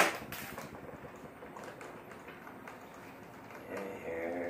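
One sharp plastic click at the start, then faint small clicks and rustles as hands handle a radio-controlled model helicopter. Just before the end a steady, low-pitched sound begins.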